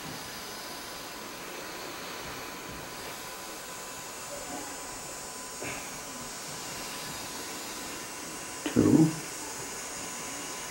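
Steady low hiss of room and microphone noise with a faint thin tone running through it, broken about nine seconds in by one short vocal sound from the speaker.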